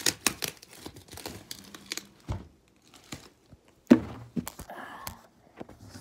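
Cardboard box and plastic bubble-wrap packaging being handled and pulled at: irregular crinkling, rustling and sharp clicks, with a quieter pause in the middle. A single loud thump comes about four seconds in.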